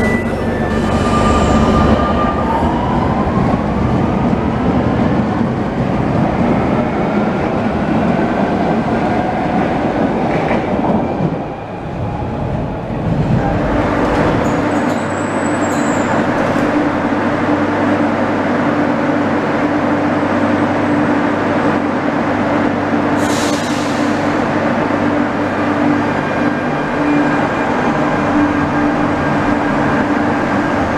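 Barcelona Metro electric trains in underground stations. A train runs past with wheels rumbling on the rails and a rising motor whine. About halfway through, the sound changes to another train at a platform with a steady electric hum, a short hiss about two-thirds of the way in, and the train starting to move.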